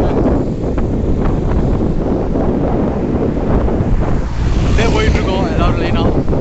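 Wind buffeting the microphone of a camera held by a moving cyclist: a loud, steady rumble. A voice comes in briefly about five seconds in.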